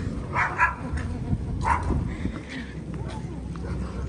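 A dog behind a house gate barking a few short times in the first two seconds, agitated by a small dog being walked past it, over a steady low rumble of street traffic.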